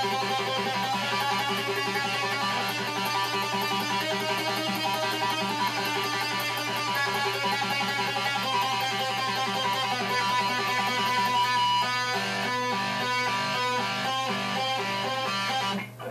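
Electric guitar playing a fast, even stream of picked notes on a single string, in groups of four, working along the neck as a finger-strength drill. A steady low hum sits under it, and the playing stops just before the end.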